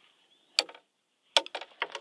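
Footsteps crunching in snow: one sharp crunch about half a second in, then a quick run of crunches from about a second and a half.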